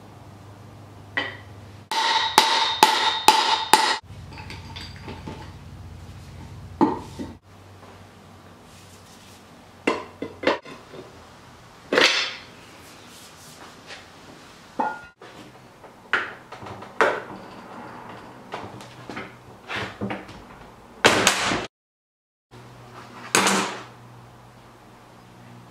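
Hammer striking steel, a socket and the driveshaft yoke, knocking the bearing caps out of a double cardan joint. A quick run of about half a dozen ringing metal blows comes about two seconds in, then single knocks are spread through the rest.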